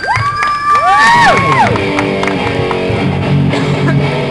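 Amplified electric guitar playing lead: notes bent and slid up and then dropping away in the first second and a half, then settling into ringing held notes.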